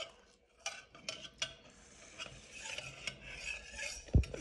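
A metal spoon stirring and scraping in a metal bowl of yogurt: scattered light clicks, then a soft rasping scrape from about halfway.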